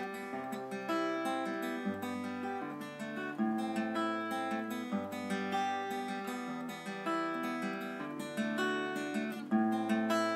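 Acoustic guitar played fingerstyle: an instrumental passage of picked chords, with the bass note moving every second or so.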